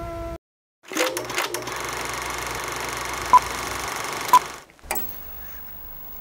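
A steady machine-like hum with a cluster of clicks at its start. Two short high electronic beeps sound about a second apart, and then the hum cuts off.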